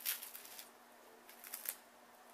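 Quiet, brief rustles and clicks of craft materials being handled on a tabletop: a cluster at the start and two short ones about one and a half seconds in.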